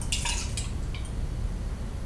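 Milk being poured from a plastic bottle into a plastic stemmed glass, a splashing pour with short bright sounds about a third of a second in and again at about one second.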